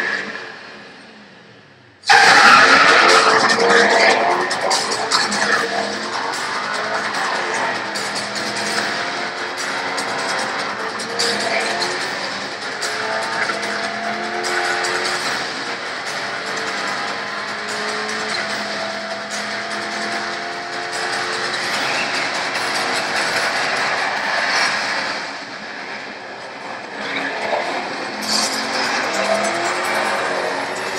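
Corvette V8 engine accelerating hard, its pitch climbing again and again as it pulls up through the gears, over music. The sound cuts in suddenly about two seconds in, after a fade.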